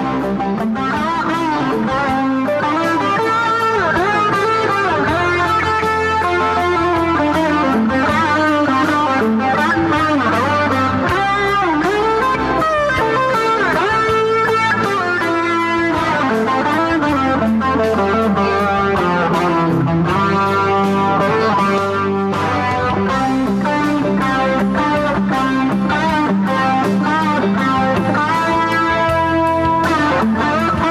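Guitar music: a lead guitar line full of bent and sliding notes played over a steady low bass part.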